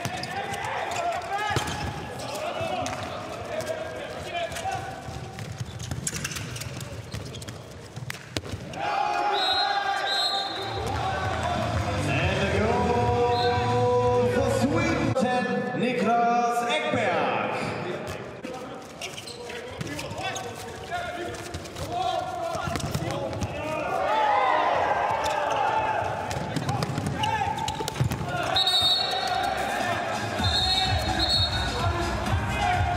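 A handball bouncing on an indoor court as players dribble and pass, with players' voices shouting over it.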